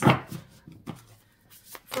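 A deck of oracle cards knocked once, sharply, against a tabletop, followed by a few light clicks of the cards being handled.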